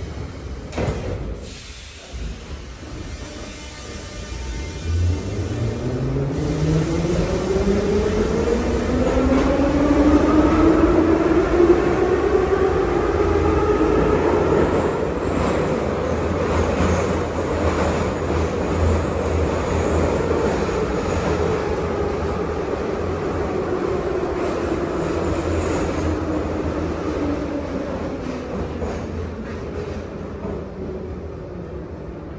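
Metro train's traction motors whining inside the car as the train pulls away. The whine rises in pitch for about eight seconds, then holds and sinks slowly, over the steady rumble of the wheels and running gear.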